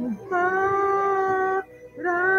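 A person singing one long held note at a steady, fairly high pitch, breaking off about a second and a half in, with the next held note starting at the end.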